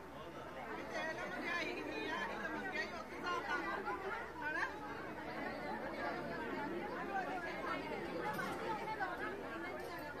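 A crowd chattering, many voices talking over one another at once.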